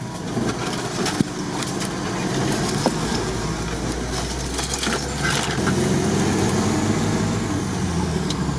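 Stock UAZ-469's engine running as it crawls through mud and brush, heard from inside its open cab, getting a little louder in the second half. Branches scrape against the body, with a couple of sharp snaps in the first few seconds.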